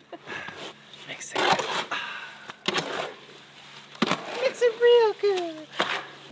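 Shovel scraping and chopping through wet concrete mix in a wheelbarrow, a stroke every second or so. Near the end a woman's voice hums a few falling notes.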